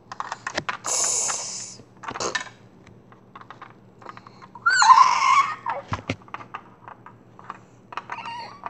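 A child's mouth sound effects for a toy battle: a breathy hiss about a second in, a short burst near two seconds, and a louder wavering cry around five seconds, with light clicks of Lego pieces and minifigures being handled in between.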